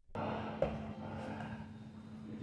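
Live sound of two men grappling on a cage mat: bodies rustling and scuffing on the mat over a steady low hum. The sound cuts in abruptly at the start, and there is a brief knock about half a second in.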